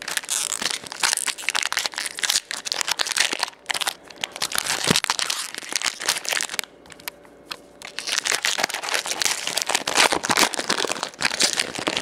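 Foil trading-card pack wrappers crinkling and being torn open by hand, in quick crackly bursts with a quieter pause a little past halfway.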